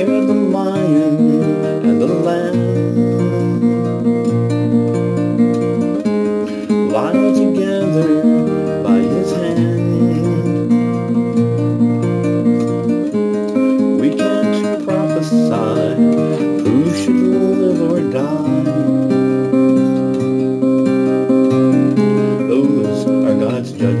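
Music led by a strummed acoustic guitar playing steady, sustained chords.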